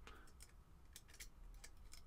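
Near silence with about six faint, sharp clicks: a metal pick tool ticking against the coil and posts of a rebuildable atomiser deck as the coil is adjusted.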